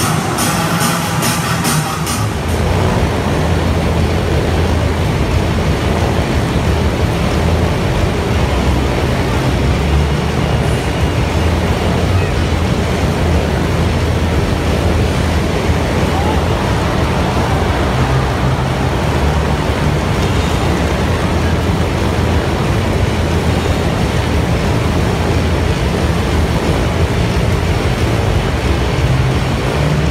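Motorcycle engines running loudly and steadily in a globe-of-death act, taking over from rhythmic music about two seconds in.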